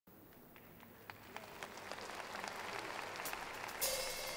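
Concert audience applauding, starting faint and growing steadily louder, with separate hand claps audible in the crowd noise.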